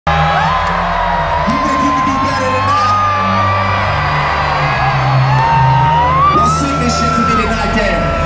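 Live hip-hop concert music over an arena sound system: heavy, steady bass under a long sliding melody line, with the crowd whooping.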